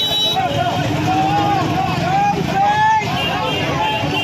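A dense crowd of voices calling and shouting over one another, no single voice standing out.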